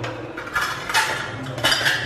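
Kitchen utensils and containers clinking and scraping in three short bursts about half a second apart, as brown sugar is added to melted butter in a glass measuring jug.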